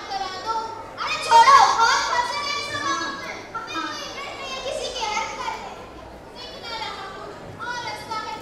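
Children's voices speaking and calling out in a large hall, loudest a second or so in.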